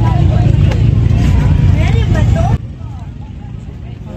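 Boat engine running with a steady low drone, voices faintly over it; it cuts off abruptly about two and a half seconds in, leaving a much quieter background.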